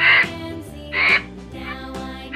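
Two short, harsh, rasping vulture calls about a second apart, over light children's background music.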